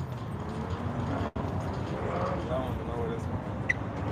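Quiet, indistinct voices over a steady low outdoor rumble, with a brief cut-out in the sound about a second in.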